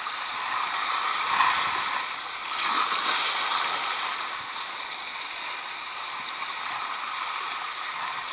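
Spinning reel being cranked to wind in line with a hooked fish on, its gears whirring, over the steady wash of sea waves.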